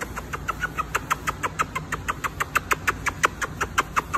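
A person giving a cat a rapid string of kisses on the face, the lip smacks coming about seven a second and getting louder after the first second.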